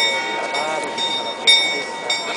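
Small bell of the Prague astronomical clock, rung by the skeleton figure during the hourly show. It is struck twice, at the start and about a second and a half in, each strike leaving a high ringing tone, over a murmuring crowd.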